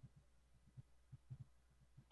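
Near silence: a faint steady low hum with soft, irregular low thumps.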